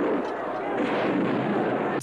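Battle sounds from a war film on a TV: a steady din of gunfire and explosions.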